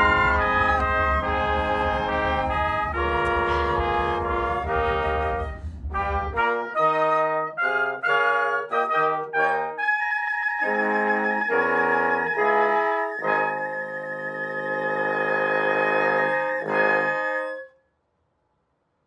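Wind band of brass and woodwinds playing the ending of a Chinese New Year medley. Held chords give way to a stretch of short, separate notes, then to a long final chord with a high note held on top, which stops abruptly just before the end.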